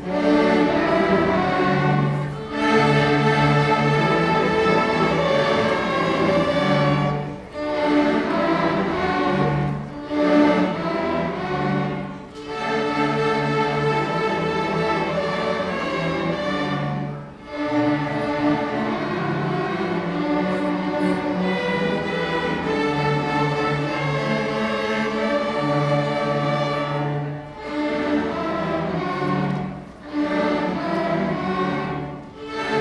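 Student string orchestra playing: violins, cellos and double basses in held phrases, with brief breaks between phrases every few seconds.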